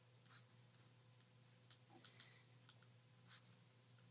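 Near silence: room tone with a steady low hum and a few faint, scattered clicks.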